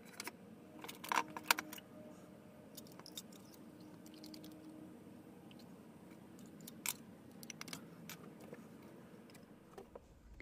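Light clicks, taps and rustles of handling: a paper pour-over filter bag being fitted on a metal tumbler and the metal pot's wire handle being taken up, with a cluster of clicks about a second in and a sharp click near seven seconds. A faint steady hum sits underneath in the first half.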